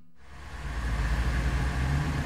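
A train's steady low rumble with a hiss over it, swelling up over about the first half second.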